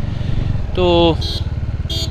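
Motorcycle engine running at low revs, a steady low pulsing rumble heard from the rider's seat as the bike slows.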